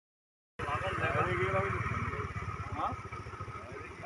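Vehicle engine and road noise heard from a moving vehicle, a steady low rumble starting about half a second in, with voices talking over it in the first couple of seconds.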